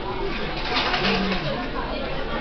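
Indistinct background chatter of people in a café, with a brief hiss-like noise about a second in.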